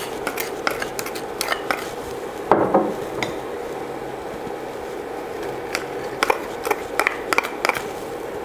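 A spatula scraping cubed candied peel out of a bowl into a stainless saucepan of warm sugar-and-honey syrup, with a run of scattered clicks and taps of the spatula against bowl and pan over a steady hiss.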